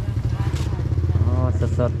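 A motorcycle engine running at low speed close by: a steady low hum with a fast, even pulse that grows louder about a second in.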